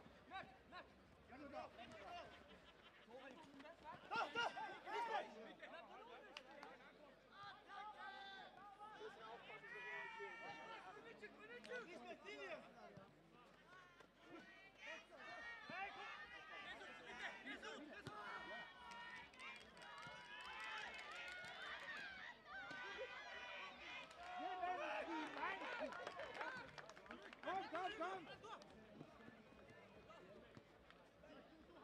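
Men's voices shouting and calling across the pitch, several overlapping, with scattered background talk. A few sharp knocks stand out among them.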